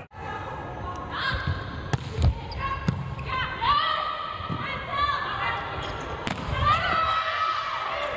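Indoor volleyball match sound: court shoes squeaking on the floor in several drawn-out squeaks, with a few sharp thuds of the ball being struck.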